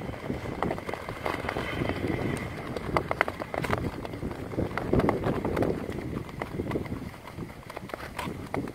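Tour skates striding over clear natural lake ice: blade scraping and gliding, with irregular sharp clicks and knocks as the blades strike the ice.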